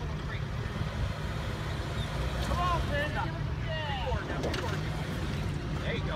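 Jeep Renegade Trailhawk engine running at low, steady revs as the SUV crawls down a stack of concrete Jersey barriers. It is heard as a continuous low rumble, with faint voices partway through.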